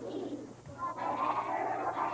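Children's voices singing together, dipping briefly and then holding a long note through the second half.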